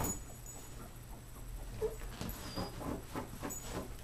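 Quick, irregular scratching and rustling on the fabric of a dog bed, starting about two seconds in, as a Rhodesian Ridgeback puppy paws and noses at it.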